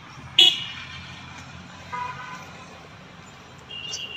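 Street traffic with vehicle horns: a loud short toot about half a second in, a fainter lower-pitched toot around two seconds, and another short toot near the end, over a steady low traffic rumble.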